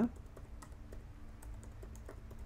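Typing on a computer keyboard: a quick, irregular run of soft keystroke clicks.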